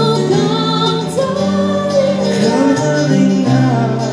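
A woman singing a slow song into a microphone, backed by a live band of electric keyboard and electric and acoustic guitars.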